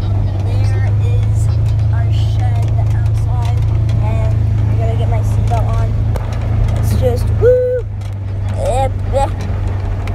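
Polaris side-by-side utility vehicle's engine running, a steady low drone, heard from the back seat of its cab.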